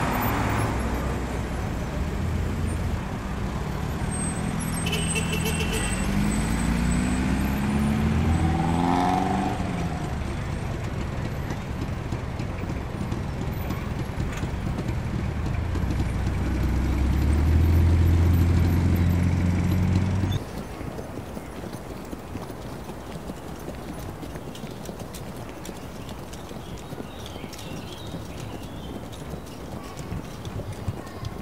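Car engines running in street traffic, one revving up in pitch a third of the way in, then a louder engine rumble swelling as a car passes. The sound cuts off abruptly about two-thirds of the way through, leaving a quieter street background.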